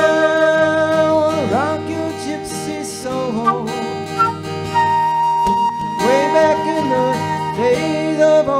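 Concert flute playing a melody over strummed acoustic guitar in an instrumental break, with bending notes and one long held note about halfway through.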